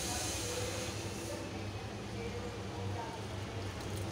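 A steady low hum with a faint hiss, and faint voices in the background.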